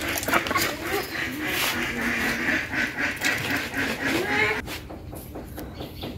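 Domestic ducks quacking over and over, fading to quieter about four and a half seconds in.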